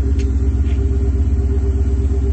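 Porsche 928's V8 engine idling steadily, a deep, even exhaust note heard from behind the car.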